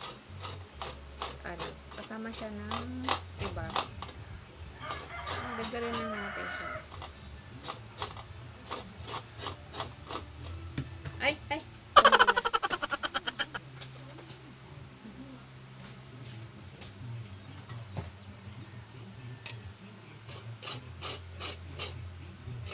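Light clicks and knocks from hands working at a kitchen table, over a steady low hum. About twelve seconds in, a rooster crows once, starting sharply and fading over a second or so.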